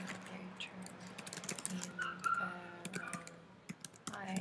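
Computer keyboard typing: a run of quick, irregular keystrokes as a line of text is typed.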